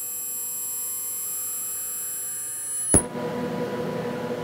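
An ultrasonic plastic welder (20 kHz, diamond-knurl horn) running against a plastic strap, giving a steady high-pitched whine made of several fixed tones. The whine stops with a sharp click about three seconds in, and a lower steady hum follows as the machine holds after the weld.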